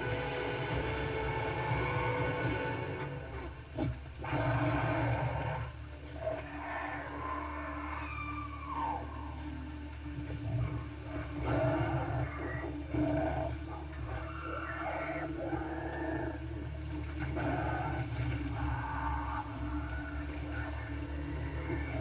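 Gorilla roars and calls from a film's sound design, over background music, with two sharp thuds about four and six seconds in.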